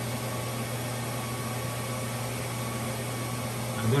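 APC Symmetra LX UPS running, a steady low hum with an even hiss of cooling-fan air.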